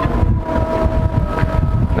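Wind buffeting the microphone: a loud, uneven low rumble. A faint steady whine sits in the background from about half a second in.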